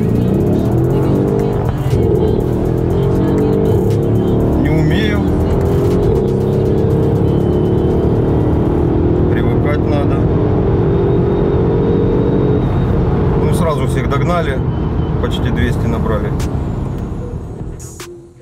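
Mercedes-AMG GLS 63's 5.5-litre twin-turbo V8 accelerating hard in manual mode, its pitch rising steadily for about twelve seconds before easing off.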